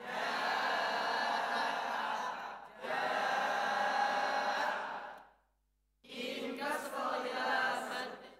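A group of voices reciting Arabic words together in unison, with drawn-out, chant-like vowels: two long phrases, then a short pause and a third phrase near the end.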